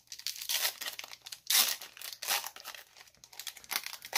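Plastic wrapper of a Mosaic basketball card pack being torn open and crinkled by hand, in a run of short rustling bursts, the loudest about one and a half seconds in.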